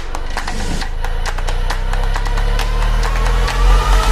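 Produced logo-intro sound design: rapid irregular clicks and ticks over a deep bass rumble that swells, with a rising whine in the second half building to a loud whoosh at the end.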